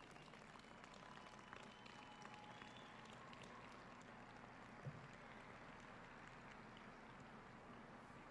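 Near silence: faint room tone, with one soft low thump about five seconds in.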